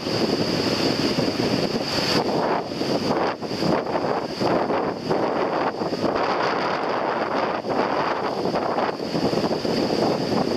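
Wind buffeting the microphone over the steady wash of breaking surf in shallow sea water.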